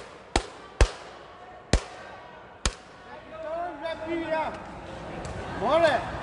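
A sepak takraw ball bouncing on the hard court floor, four sharp knocks spaced about half a second to a second apart. Then come short shouted calls from the players, the loudest near the end.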